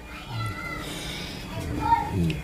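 A cat meowing: one drawn-out call, then a short one near the end.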